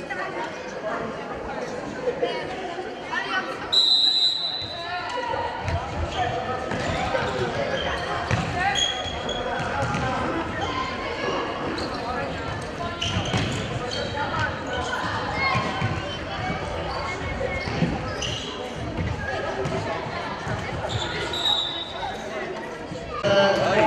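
Echoing sports-hall din of players' and spectators' voices during an indoor futsal match, with the thuds of the ball being kicked and bouncing on the hard floor. A short referee's whistle blast sounds about four seconds in, and another shorter one near the end.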